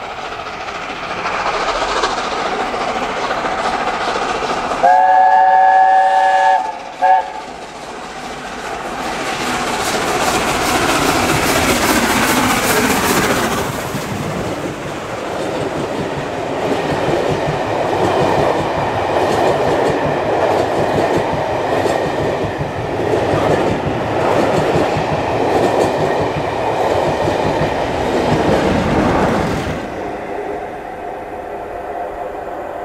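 LNER A4 steam locomotive 4498 Sir Nigel Gresley sounding its chime whistle, a chord of several notes held for under two seconds with a short second toot, then working hard past with plenty of power, its coaches clattering over the rails, the sound fading near the end.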